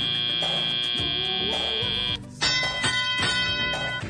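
Robotics competition field buzzer sounding one long steady note, marking the end of the autonomous period; it cuts off about two seconds in. Half a second later the ringing field sound that signals the start of the driver-controlled period begins, all over arena music with a steady beat.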